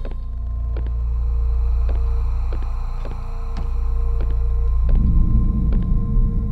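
Suspense film score: a deep, steady droning rumble with faint held tones and a regular ticking about every half second, a rougher low swell rising near the end.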